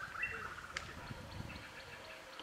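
Faint, short bird chirps over quiet forest ambience.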